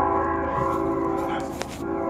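A horn sounding a steady chord of several notes, held for about two seconds with a short break near the end.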